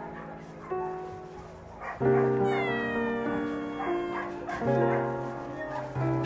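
A cat meows once, a single drawn-out meow falling in pitch about two and a half seconds in, over soft background music.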